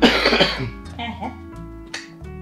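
A man coughing hard into his fist: a loud burst of coughs at the start, then a weaker voiced sound about a second in, over plucked-string background music.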